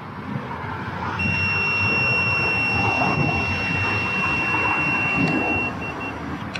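Handheld breathalyser sounding one steady high-pitched tone for about four and a half seconds while a long breath is blown into its mouthpiece, the tone running as the breath sample is taken. It starts about a second in and stops just before the end, with street traffic behind.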